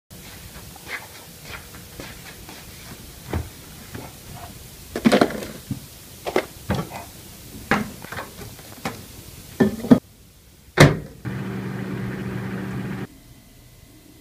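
Scattered knocks and clicks of a plastic food container and a mini fridge being handled. Then a single loud knock, like a microwave door shutting, and a Daewoo countertop microwave oven running with a steady hum for about two seconds before it cuts off suddenly.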